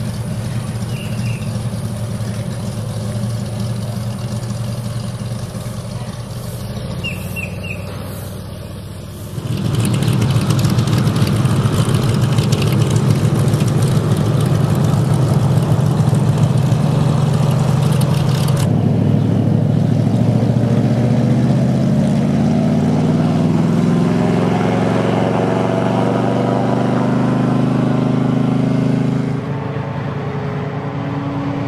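Airboat engine and propeller running, a steady loud drone that gets louder about ten seconds in; in the last ten seconds its pitch climbs gradually.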